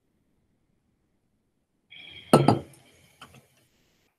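Metal drinking tumbler set down with a clink and knock about two seconds in, followed by a lighter knock about a second later.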